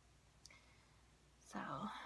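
Near silence for about a second and a half, with one faint click about half a second in, then a woman's voice saying "so" near the end.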